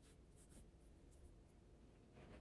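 Near silence: room tone with a few faint, brief rustles of yarn and knitting being handled.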